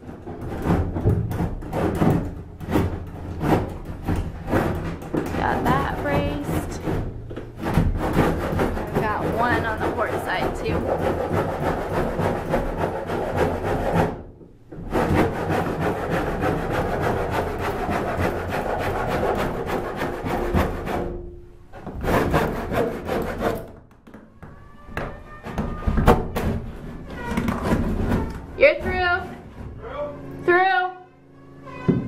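Wooden timbers rubbing and scraping as props are worked into place under the cabin roof, with music playing as well.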